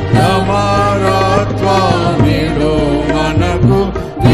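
A Telugu Christian devotional song: a voice singing a melody over instrumental accompaniment with sustained bass notes.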